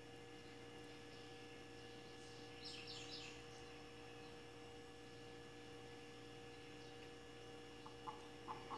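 Near silence with a steady faint electrical hum, and a few faint high bird chirps about three seconds in.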